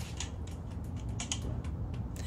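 Scattered light clicks and taps of items being handled and put back into a plastic storage tote, several a second and irregular.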